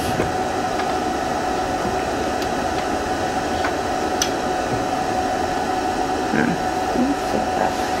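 Steady machine hum and hiss with a constant mid-pitched tone, fan-like, with a few faint ticks over it.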